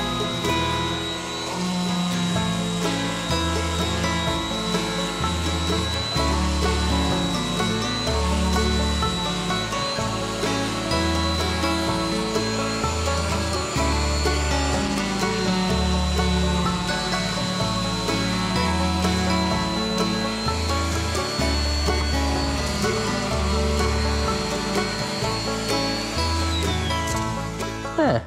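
Bosch random orbital sander running with a steady high whine, scuffing the green paint off a steel gate hinge so black spray paint will take; the whine rises as it spins up at the start and winds down near the end. Background music with a steady bass beat plays over it.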